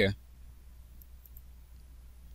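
A few faint computer mouse clicks over a steady low electrical hum, right after a spoken word ends.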